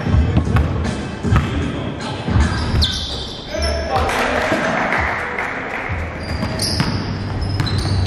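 A basketball bouncing on a hardwood gym floor during live play, with players' voices and short, high sneaker squeaks.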